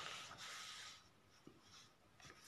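Faint pen scratching on paper, fading out about a second in, then near silence with a light tap.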